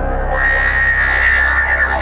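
Old-school Goa trance electronic music: a deep steady synth drone, with a bright high synth tone and hiss coming in about half a second in and wavering near the end.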